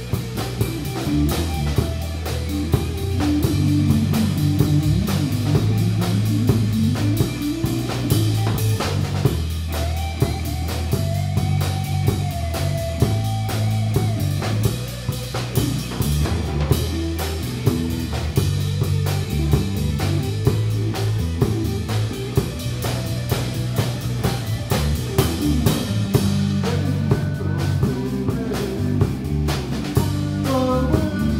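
Live blues-rock trio playing an instrumental passage: electric guitar, electric bass and drum kit, with a steady driving beat. A held guitar note bends slightly about ten to fourteen seconds in.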